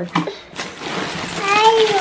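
A toddler's high-pitched, drawn-out vocal sound that rises then falls, starting past halfway, over a steady rustling hiss of handling noise.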